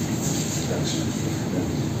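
Steady room noise: an even, featureless background with no distinct events.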